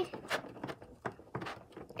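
A scattering of light, irregular plastic clicks and taps as the blue plastic top of a toy slime maker is pressed and turned.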